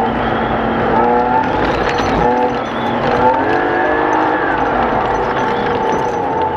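Race car engine heard from inside the cabin, its revs rising and falling several times as the car accelerates on a snowy track, over steady tyre and road noise.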